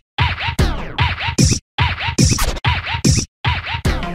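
DJ-style turntable record scratching in an intro sting, with short chopped bursts that swoop up and down in pitch and are broken by several abrupt silent gaps.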